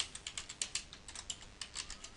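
Typing on a computer keyboard: a quick run of short key clicks as a short phrase is typed.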